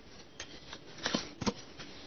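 Tarot cards being handled and laid on the table: a few light clicks and rustles of card against card, the sharpest about one and a half seconds in.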